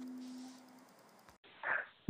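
The last chord of a short guitar-and-vocal jingle ringing out and fading away within the first second. Near the end comes a short, faint sound over a phone line.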